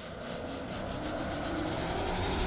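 A low rumbling swell of noise growing steadily louder, the build-up riser of a radio-show intro ident.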